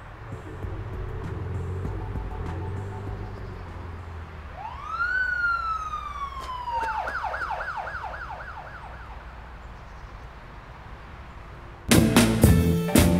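Emergency-vehicle siren over a low rumble of street traffic. It gives one rising-then-falling wail about halfway in, then switches to a fast yelp of about four cycles a second that fades away.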